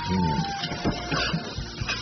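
Metal spatula scraping and knocking against a wok as the food is stir-fried, in irregular strokes, over background music.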